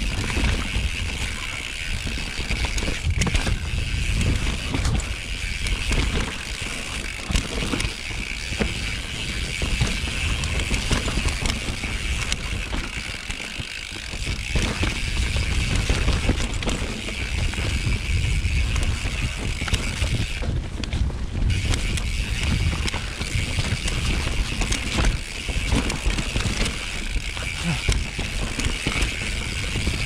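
YT Capra enduro mountain bike riding down a dirt forest trail: a continuous rumble of tyres over the ground, with the bike's frame and chain rattling and clicking and the rear hub ticking as it coasts. The higher ticking stops for about a second, about two-thirds of the way through, then carries on.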